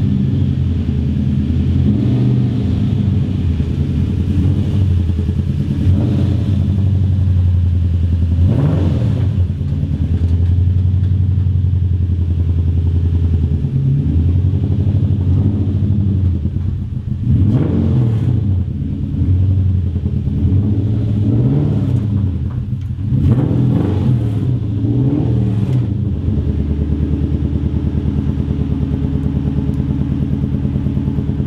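Straight-piped Toyota 1UZ V8 in a Mazda B2200 mini truck running loudly at low revs, rising and falling in pitch several times, mostly in the second half, as the throttle is blipped.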